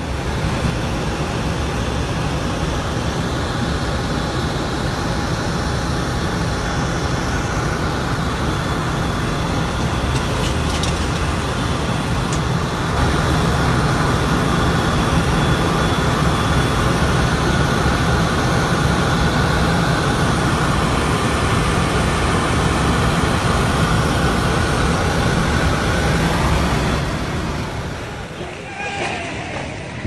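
Steady drone of aircraft engines heard from inside the cabin: a loud low hum under an even rushing noise, with a faint higher whine. The sound gets a little louder about halfway through and drops away just before the end.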